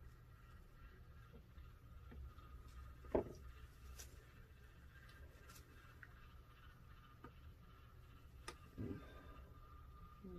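Near silence: a faint steady low hum with a few soft clicks and taps, the loudest about three seconds in and a couple more near the end.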